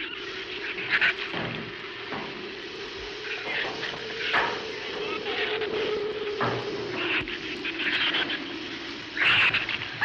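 Giant-shrew creature sound effects: repeated short, high, rough chittering and snarling calls about once a second, over a steady hum.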